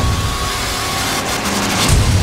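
Cinematic background music in a transition: the drum beats drop out and a rising whoosh of noise, with a faint held tone, swells to a peak near the end.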